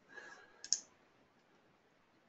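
A single sharp computer mouse click a little after half a second in, advancing the presentation to the next slide, preceded by a faint short rustle; otherwise near silence.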